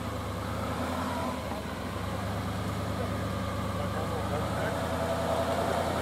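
Chevrolet pickup truck engine running at low speed, a steady low hum, as it pulls an empty boat trailer up a launch ramp.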